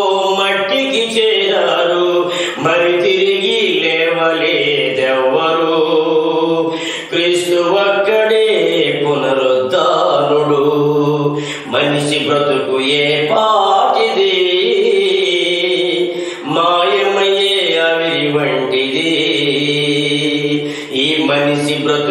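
A man singing a Telugu gospel song in long, held notes that glide and waver in a chant-like style, with only brief breaks for breath.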